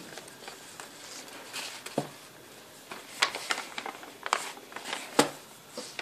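Hands handling a folded paper gift bag and a satin ribbon bow: paper rustling and crinkling with scattered sharp clicks and taps, busiest in the second half, the loudest click about five seconds in.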